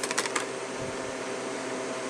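A few short crinkling clicks of a plastic blister-pack toy-car card being handled and set in place in the first half second, over a steady machine-like room hum.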